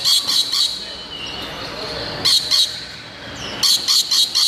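Rainbow lorikeet screeching: short, shrill shrieks in quick clusters, a run of three at the start, a pair a little past two seconds in, and another run near the end.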